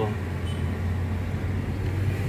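Steady low drone of a car's engine and road noise, heard from inside the cabin while the car drives along.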